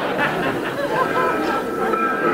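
Studio audience laughter tapering off after a joke, mixed with crowd chatter.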